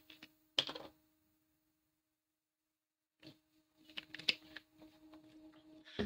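A quiet pause over a low steady electrical hum: one short sound just over half a second in, a stretch of dead silence, then faint scattered clicks about four seconds in.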